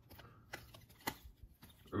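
Faint handling of a stack of glossy trading cards, with a few light clicks about half a second apart as the cards are slid and flicked through by hand.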